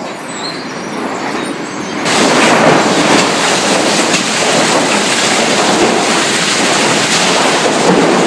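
Sawmill machinery running, with cut lumber moving along chain and roller conveyors: a steady, dense clatter. About two seconds in it cuts abruptly to a louder, harsher din.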